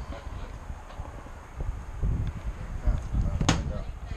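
Low rumble of wind and handling noise on a moving camera's microphone, under faint voices of men talking, with one sharp click about three and a half seconds in.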